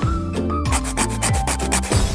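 Nail file rasping over fingernails in quick back-and-forth strokes, over background music.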